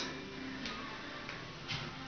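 A quiet room with a few faint, soft clicks, about three over two seconds.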